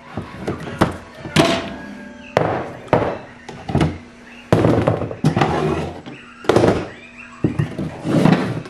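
Plastic food storage containers knocking and clattering against each other and the wooden cabinet shelf as they are lifted out by hand: a series of irregular knocks, with longer bouts of clatter in the middle.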